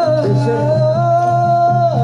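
Live kuda lumping accompaniment music: a long held melody line over a steady low hum and light drum strokes.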